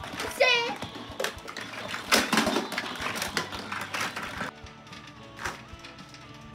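Hard plastic toys clattering and knocking together as children rummage through a toy bin, with a brief high child's squeal about half a second in. Background music runs underneath, and the clatter stops about four and a half seconds in.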